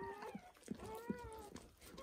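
Newborn puppies crying with thin, high-pitched, wavering squeals, fairly quiet, one cry drawn out about a second in. A few short wet clicks from the mother dog licking sound among them.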